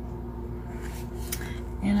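Quiet room tone with a steady low electrical-type hum, a faint tap about a second and a half in, and a woman's voice starting to speak at the very end.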